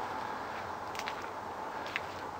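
Quiet outdoor background noise: a steady faint hiss with a light hum, and a couple of faint ticks.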